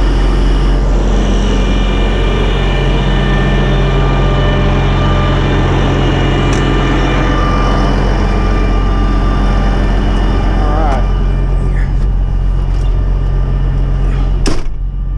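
Diesel engine of a Kenworth semi tractor idling steadily up close, its PTO just switched off, with a loud rushing noise over it that eases somewhat near the end.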